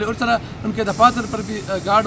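A man speaking, with a steady background hiss coming in about a second in.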